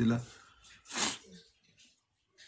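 A man sneezes once, a short sharp burst about a second in.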